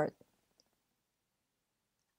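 Near silence after the end of a spoken phrase, broken only by a faint click or two in the first half second.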